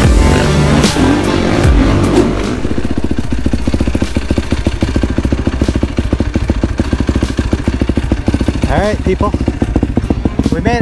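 Music over riding sound for the first two seconds or so. Then a Yamaha YFZ450R quad's single-cylinder four-stroke engine idles with an even, rapid pulse.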